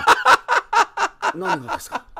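A man laughing hard in quick, repeated bursts, about four to five a second.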